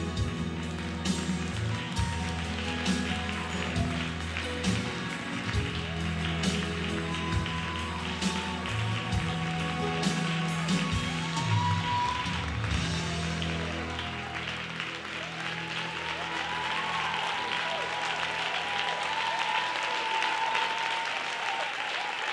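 Closing bars of a slow worship song, sustained bass notes with a soft beat, ending about two-thirds of the way through while an audience applauds; the applause carries on alone once the music stops.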